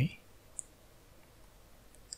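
A single short, sharp computer mouse click about half a second in, selecting the XY plane to start a sketch. Faint room tone around it.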